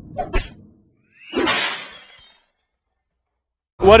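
Logo intro sound effect: a couple of sharp clicks, then about a second in a glassy shattering crash that fades out over about a second.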